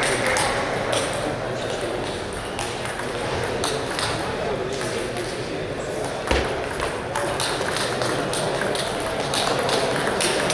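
Table tennis balls clicking off bats and tables in a rally, with clicks from other tables and voices from around the hall behind them. One louder thump about six seconds in.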